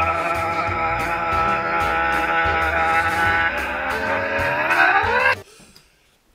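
A man's long continuous shout held on one steady pitch, sped up. It climbs in pitch and strains near the end, then cuts off about five seconds in.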